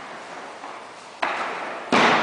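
Two sharp slaps of aikido breakfalls, bodies and hands striking foam mats, about a second in and a louder one near the end, each ringing on in the echoing gym hall.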